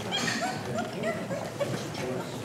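A small dog, a Pekingese, giving a quick run of short yips and whimpers in the first second and a half.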